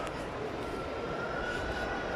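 Steady shopping-mall background noise: a continuous hum with a faint, thin high tone held over it.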